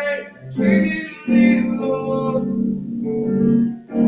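Electronic keyboard played with an organ sound: sustained chords that change every second or so and swell in loudness.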